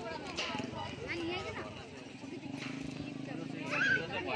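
Several people's voices talking and calling, over a steady run of light knocking.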